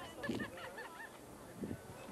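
Children's voices calling out and chattering in a group, with a quick string of short high notes in the first second.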